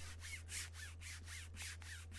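A hand rubbing quickly back and forth over the slick, rubbery Speed Skin material on a CCM Extreme Flex III goalie leg pad, a run of short scraping strokes, about four or five a second. The material is made for sliding on the ice.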